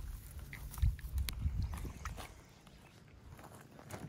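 Faint rustling and scattered light clicks of movement through vegetation, with a few low thumps in the first two seconds, then quieter.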